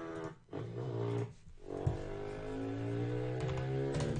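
Harley-Davidson motorcycle engine sound effects from a stock library, previewed in a few short stretches with brief gaps between them. The last and longest stretch rises slowly in pitch as the engine revs.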